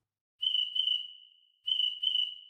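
Cricket chirp sound effect played by theCRICKETtoy iPhone app as the app opens. It goes "chirp chirp": a pair of high chirps about half a second in, then a second pair near the end, each pair trailing off.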